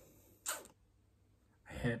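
A short, quick breath about half a second into a pause, with near silence around it, before a man's voice resumes near the end.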